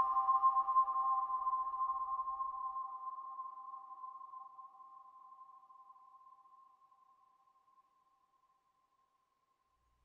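Sampled celesta chord ringing out through a very long, heavily modulated plate reverb set to about 16 seconds, the held pitches fading steadily away over about eight seconds into near silence.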